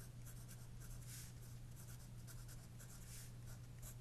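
Pen writing on paper: a run of short, faint scratchy strokes as words are written out, over a steady low hum.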